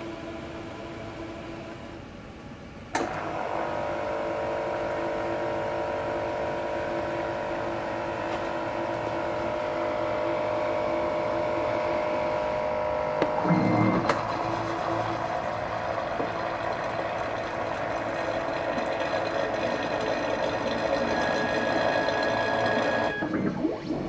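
GenScript AmMag SA magnetic-bead purification instrument running, its motors whirring steadily from about three seconds in as the robotic arm moves over the sample rack. A low rumble and a sharp knock come about halfway through.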